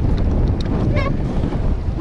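Wind buffeting the camera microphone on an open pedal boat at sea: a steady, loud low rumble with waves around the boat.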